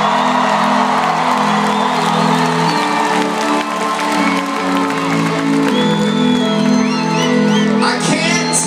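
Live rock band holding sustained chords that change every couple of seconds, over a cheering crowd. Short high whoops and whistles from the audience come near the end.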